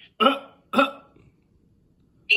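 A person's voice making two short, sharp vocal sounds about half a second apart, each starting suddenly and dying away quickly.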